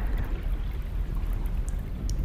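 Steady low rumble of underwater ambience: an even wash of water noise, heaviest in the bass, with no distinct events.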